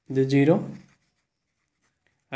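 A man's voice speaking for about a second, then a pause with faint scratching of a pen writing on paper.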